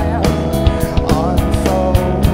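Live rock band playing an instrumental passage: a drum kit heard up close, with steady drum hits and cymbal strikes several times a second, under distorted electric guitar with bent notes and bass.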